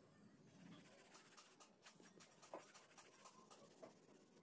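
Faint graphite pencil scratching on paper in quick, repeated sketching strokes.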